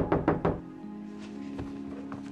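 Knocking on a door: four quick, loud raps in the first half second, over soft background music with long held tones.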